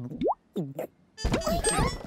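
Cartoon bubble sound effects: a few short, rising 'bloop' sounds. Music comes in about a second in.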